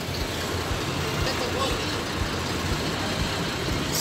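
Street noise of a heavy truck and other vehicles running at idle in a traffic jam: a steady low engine hum under general noise, with faint voices of people nearby.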